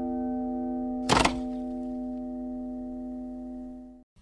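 Intro jingle: one sustained, ringing chord that fades slowly and cuts off at the end, with a short thump about a second in.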